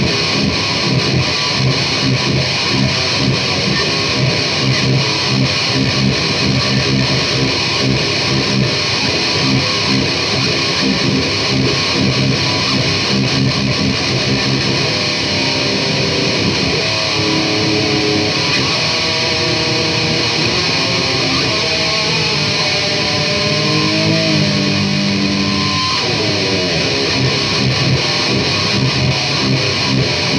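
Blue SG electric guitar played continuously: a run of riffs and chords, with some notes held out in the second half.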